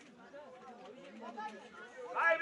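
Faint, distant voices talking and calling out across an open football pitch, growing a little louder near the end.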